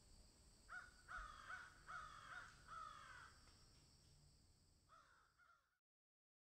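A bird calling: four calls in quick succession in the first few seconds, then two fainter calls near the end, over a faint steady high hiss.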